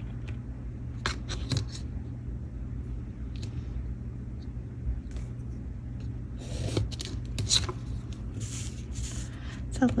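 Pencil drawing along a clear plastic ruler on paper: a few light clicks of the ruler being set down about a second in, then a longer run of scratchy pencil strokes and paper handling in the second half.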